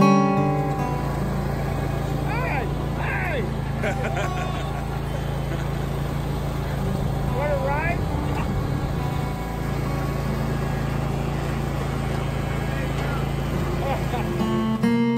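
Steady drone of a backpack gas leaf blower's small engine running, with people's voices and a laugh about four seconds in.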